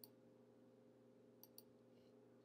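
Near silence: faint room tone with a steady low hum, and two faint computer mouse clicks in quick succession about one and a half seconds in.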